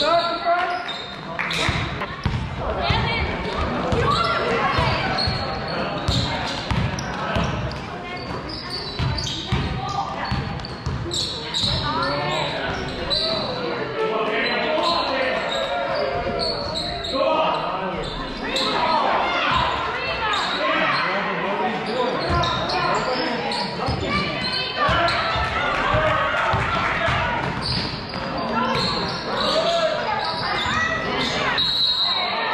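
Basketball bouncing on a hardwood gym floor during play, mixed with shouting and talk from coaches and spectators, echoing in a large hall.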